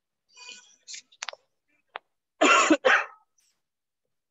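A person coughing twice in quick succession, after a few faint clicks.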